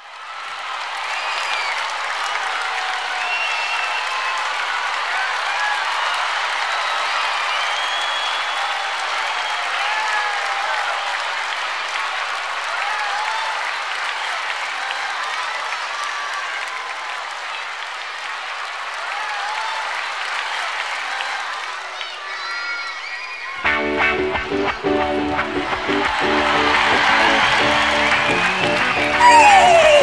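A large audience, mostly young children, cheering, shrieking and applauding at a live concert. About 23 seconds in, a live band starts up and the music carries on under the crowd noise.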